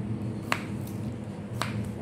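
Two sharp clicks about a second apart, over a steady low hum.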